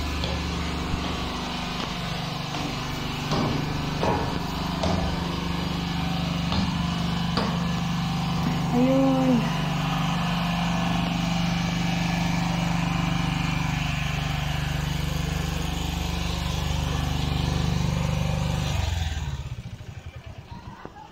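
A steady low mechanical hum under a background of faint voices. It drops away suddenly near the end.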